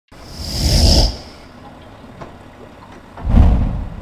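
Small waves washing up onto a sandy beach: two swelling rushes of water, about half a second in and again near the end, with a low hiss between them.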